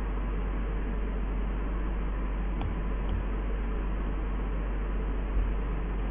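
Steady background hiss with a low hum underneath, the noise floor of a lecture recording, with a few faint clicks about halfway through and again near the end.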